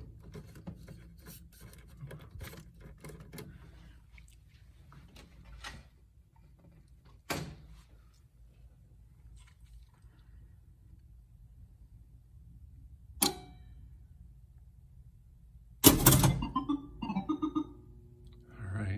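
Light clicks and rattles of a wiring-harness connector being worked back onto a circuit-board header in a pinball machine's backbox, over the first several seconds. Two single sharp clicks follow, then near the end a loud knock and a few short steady tones.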